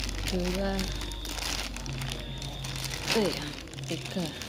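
Plastic courier mailer bags crinkling and rustling as hands move and press them, with irregular crackles.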